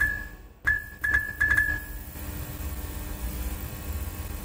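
Neon-sign sound effects: a string of sharp electric clicks, each with a short high ring, coming faster and closer together over the first two seconds. A low, steady electrical hum follows.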